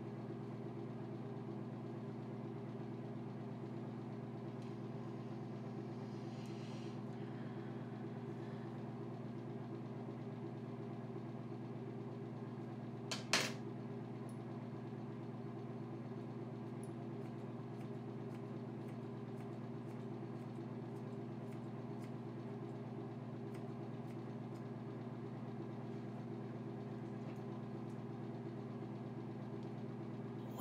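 Steady low hum made of several even pitched layers. One sharp click comes about thirteen seconds in, and faint light ticks follow in the second half.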